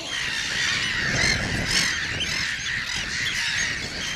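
A flock of seabirds calling over one another: many short, overlapping cries, with wind rumbling on the microphone underneath.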